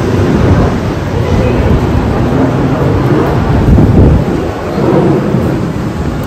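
Rain and wet-street ambience with a loud, uneven low rumble, strongest about four seconds in.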